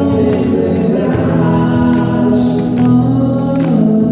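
Live acoustic band music: male voices singing long held notes over acoustic guitar, electric bass guitar and cajón, with the cajón keeping a steady beat.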